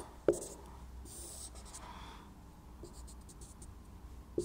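Whiteboard marker drawing on a whiteboard in short, faint, scratchy strokes, as for axes and a dashed line, with one sharp tap shortly after the start.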